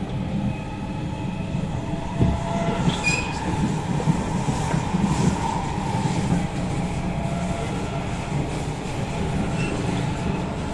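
SMRT C751B train cabin noise while running at speed on elevated track: a steady rumble of wheels on rail with faint steady motor tones. There is a knock about two seconds in and a brief high wheel squeal with a click about a second later.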